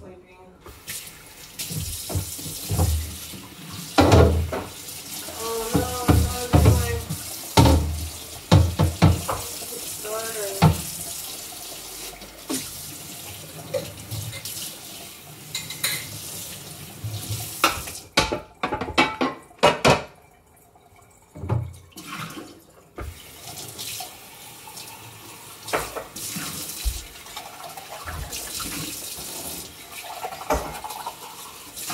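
Kitchen tap running into a sink while dishes are washed by hand, with frequent clinks and knocks of dishes against the sink and each other. The water stops for a few seconds past the middle, then runs again.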